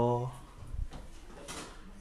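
A man speaking: a phrase that ends just after the start, then a pause that holds only a few faint, soft noises.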